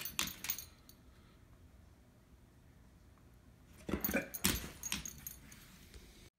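A dog's collar tags jingling as the dog moves, in two short spells: at the start and again about four seconds in, with quiet between.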